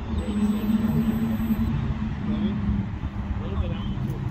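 Outdoor background noise: a steady low rumble with a held low hum, and indistinct voices.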